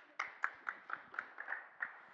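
Applause from a small audience: individual hand claps at about four a second, fading away near the end.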